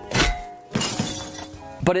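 Editing sound effect over background music: a sudden hit, then a noisy crash about a second in that fades away over about a second.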